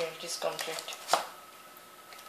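Brief wordless voice sounds from a man, then a sharp knock about a second in as a phone in a plastic case is pushed into the slot of a cardboard box. A faint steady high whine runs underneath.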